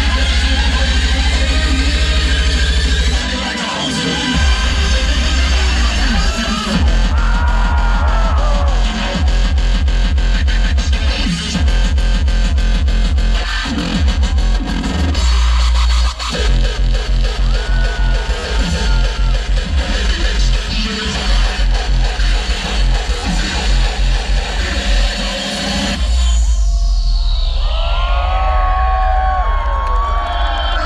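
Hardstyle DJ set played loud over a festival sound system: a pounding distorted kick drum under synth leads, with a brief break near the end followed by a falling sweep.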